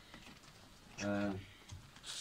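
A pause in a man's spoken address, broken about a second in by one short held vocal sound, like a hesitation, over faint light tapping in the room.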